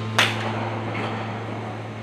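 A golf club striking a ball off a driving-range mat: one sharp crack about a quarter of a second in, with a short ringing tail. A steady low hum runs underneath.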